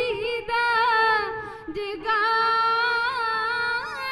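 Two women singing a Punjabi dhadi-style ballad in long, held notes with vibrato, accompanied by a bowed sarangi. The singing breaks off briefly about halfway, then resumes on a long sustained note.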